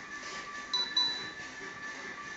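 Two short, high pings close together about a second in, over faint steady tones in the background.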